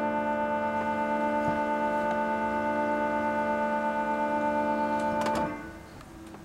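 Pipe organ holding one sustained chord with a slight regular waver. About five seconds in the chord cuts off with a few clicks from the keys and pneumatic action, leaving a short reverberant tail.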